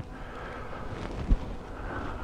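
Outdoor background noise with light wind on the microphone, and a single short low thump a little past halfway through.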